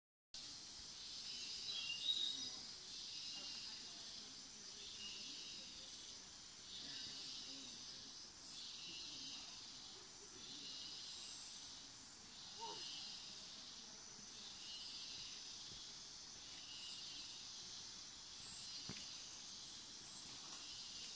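Rainforest insects calling in a steady high chorus that swells and fades every second or two, with a brief sharper call about two seconds in.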